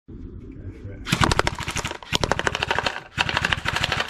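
Three bursts of rapid fully automatic fire from an airsoft gun, each about a second long, with BBs rattling against a cardboard torch box and the paving slabs until the box is knocked over.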